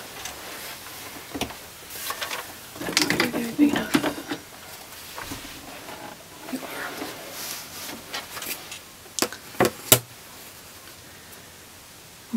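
Hands handling folded cotton binding fabric and an acrylic quilting ruler on a cutting mat. Soft rustling and light knocks, with two sharp clicks a little before ten seconds in.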